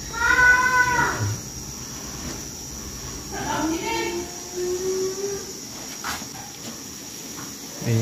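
Two drawn-out animal cries: a short, higher one right at the start and a longer, lower one that rises slightly, about three seconds in. Under them runs a steady, high insect chirr.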